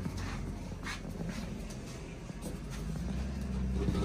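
A glass storm door and a front entry door being opened, with a few faint latch clicks and footsteps over a low rumble, and sharper knocks near the end.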